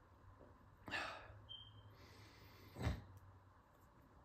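Faint nasal breaths of a man sniffing cologne from a paper fragrance test strip held under his nose: one sniff about a second in and a shorter one just before three seconds.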